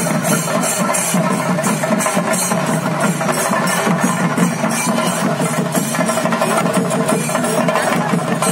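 Theyyam percussion: chenda drums with hand cymbals playing loudly and steadily in a fast, even beat.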